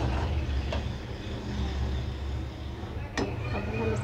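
A spatula stirring a thick potato, pea and minced-meat curry in a kadai, with two sharp taps against the pan, one about a second in and one near the end, over a steady low hum.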